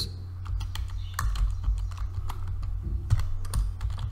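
Typing on a computer keyboard: a run of irregular keystroke clicks over a steady low hum.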